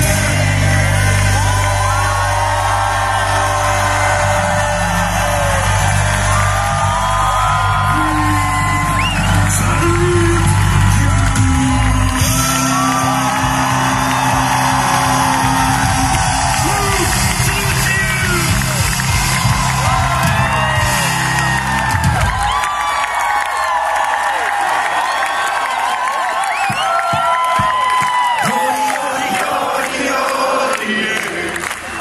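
Live band playing loudly while a large crowd sings along and whoops. About two-thirds of the way through, the bass and band drop out, leaving the crowd singing on its own with scattered shouts.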